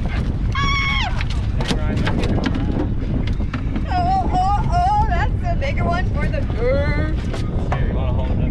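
Wind buffeting the microphone in a steady low rumble, with people's excited voices calling out over it without clear words, including a high, falling call about half a second in.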